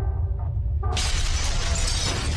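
Sound-effect shattering and crumbling debris over a deep steady low rumble: the rumble runs alone at first, then about a second in a sudden loud crash breaks in and keeps going as a continuing shatter.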